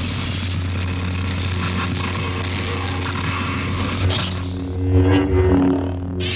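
Lightsaber hum from the "Lost Tribe" SmoothSwing sound font: a steady low drone. In the last two seconds it swells in and out a few times as the lit blade is swung.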